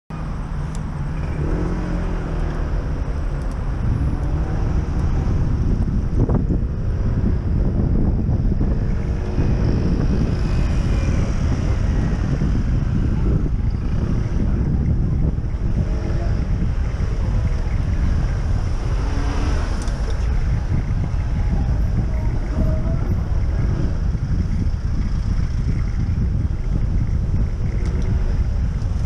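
Wind buffeting the microphone of a camera on a moving bicycle: a steady low rumble, over the noise of road traffic and car engines in slow city traffic. There is one sharp click about six seconds in.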